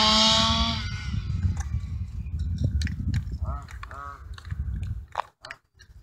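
Modified 30.5cc two-stroke engine of an HPI Baja RC car at high revs, its high-pitched buzz fading out within the first second as the car runs off into the distance. Then a low rumble, and a man's short breathy 'ah' sounds.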